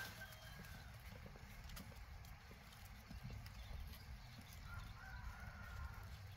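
Faint rustling and small scattered clicks of chili pepper plants being picked by hand, over a low outdoor background.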